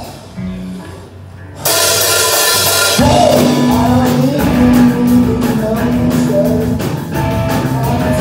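Live rock band of drums, electric guitar and bass guitar starting a song: after a brief quieter moment the band crashes in loud about a second and a half in, with steady bass notes filling out the sound from about three seconds in.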